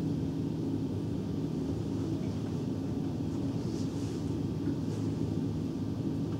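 Room tone: a steady low mechanical hum, with a faint rustle about four seconds in.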